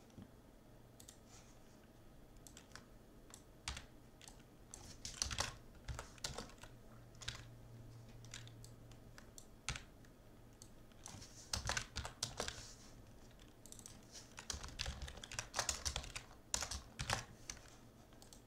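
Typing on a computer keyboard: irregular keystroke clicks in three main runs with scattered single taps between, over a faint steady low hum.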